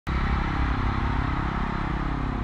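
A loud, steady low rumble with slowly wavering drone tones, cutting in abruptly at the start, like a cinematic sound bed under a TV show's opening.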